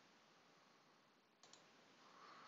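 Near silence with a faint steady hiss, broken by a quick double click of a computer mouse about one and a half seconds in.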